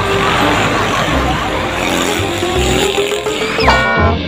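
Road traffic passing close by, a large truck and a motorcycle with a dense rush of engine and tyre noise and a slowly rising engine note, under background music with a steady bass beat. A short rising tone sounds near the end.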